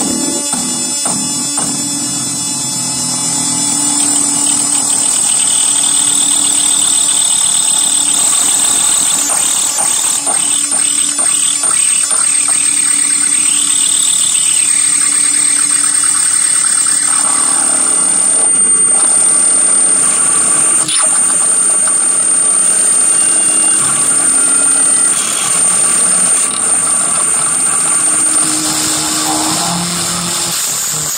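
Experimental noise from an electric guitar rigged with extra knobs and switches: a steady high-pitched whine over a low drone, a run of quick chirps in the whine about ten seconds in, and a tone that slides up and back down midway.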